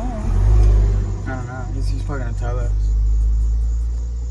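Low, steady engine and road rumble of a supercar heard inside its cabin, swelling briefly about half a second in, with a couple of short bits of voice over it.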